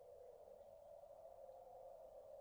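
Near silence, with only a faint steady hum in the background.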